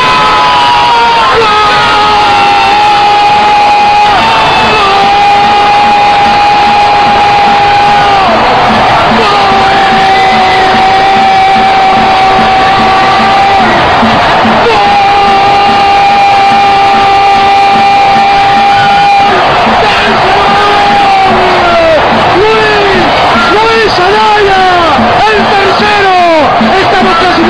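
Sports commentator's long drawn-out "gol" cry, held in four long breaths of about four seconds each, then breaking into excited shouting about two-thirds of the way through, over crowd noise: the call of a goal just scored.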